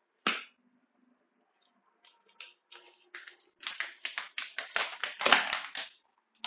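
A thin plastic water bottle being handled and crinkled: one sharp crack just after the start, a few scattered clicks, then a quick run of crackles in the last two and a half seconds.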